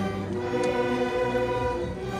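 Student string orchestra playing a slow passage of held, sustained notes, the chords changing every second or so.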